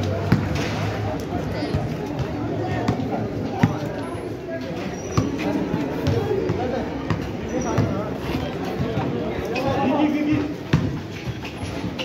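Basketball bouncing on a concrete court in scattered, irregular sharp bounces during play, over continuous talking and calls from players and onlookers.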